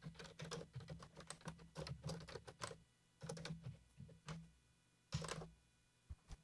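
Typing on a computer keyboard, faint: a quick run of keystrokes, a short pause, a few more keys, then a louder cluster of keypresses near the end.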